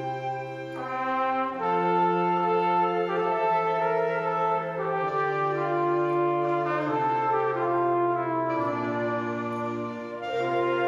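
Flugelhorn playing a slow, sustained melody over a wind band's held chords, with clarinets and a low brass bass line. The notes are long and change every second or two, the sound thinning briefly about half a second in and just before the end.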